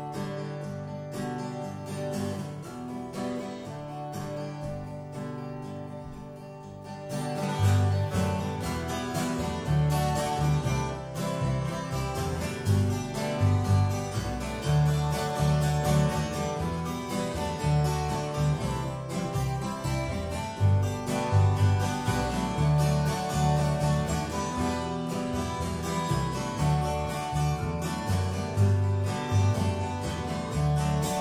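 Live acoustic folk band playing an instrumental intro: acoustic guitar plays quietly at first, then about seven seconds in an upright double bass comes in with strong low notes and the band plays louder.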